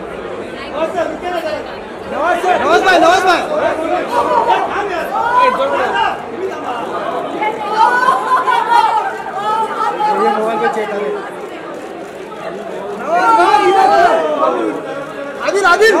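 Chatter of several people talking over one another, with brief lulls about two seconds in and again around twelve seconds.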